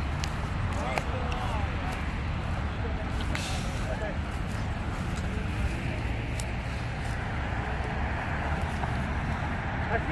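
Steady low rumble of vehicles, with faint voices talking in the distance and scattered snaps and rustles of brush underfoot.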